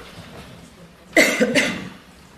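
A man coughing twice at the lectern microphone, about a second in: two short, loud coughs close together.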